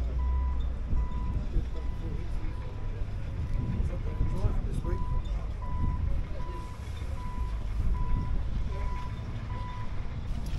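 A reversing alarm beeping steadily, about one and a half beeps a second, over a low rumble.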